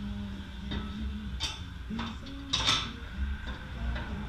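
Metal knocks and scrapes from a front air bag and its steel mounting cup being test-fitted up into the truck's frame pocket above the lower control arm, with the loudest knock a little past halfway. A low steady hum runs underneath.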